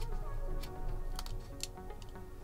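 Background music, with a few light clicks from a small tool prying at a cable connector on a laptop's logic board.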